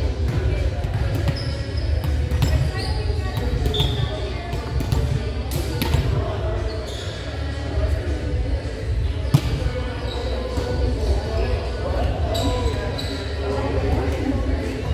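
Volleyballs being struck and bouncing on a hardwood gym floor: a few sharp smacks, the loudest about nine seconds in. Short sneaker squeaks and players' background chatter echo in a large gymnasium.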